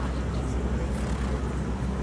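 A steady low rumble with an even hiss above it: outdoor background noise.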